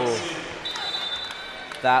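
A referee's whistle blown once, a single steady high tone lasting about a second, over faint arena background noise.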